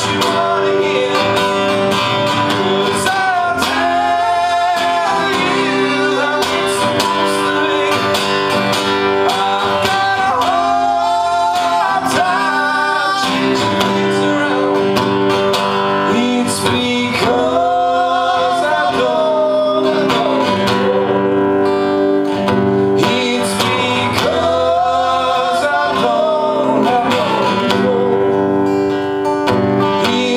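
Two acoustic guitars strummed together with a sung vocal melody, a duo song played live.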